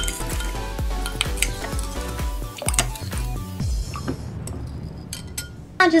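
A plastic measuring spoon stirring borax into water in a glass bowl, rapidly clinking and scraping against the glass for about four seconds before stopping. Music plays underneath.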